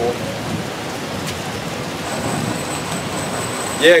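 Steady, even hiss of background noise, with a faint thin high whine coming in about halfway through.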